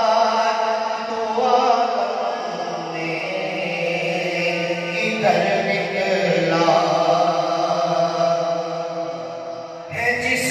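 A man chanting an Urdu devotional kalaam in long held, wavering notes into a handheld microphone, phrase after phrase, with the voice easing off just before the end.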